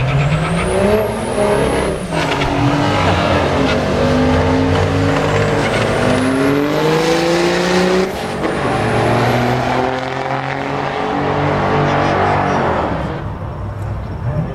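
Dodge Ram dually's 12-valve Cummins 5.9 L inline-six turbodiesel at full throttle on a quarter-mile drag run. The engine note climbs in pitch through each gear, drops at the shifts about two and eight seconds in, and fades near the end as the truck goes away down the track.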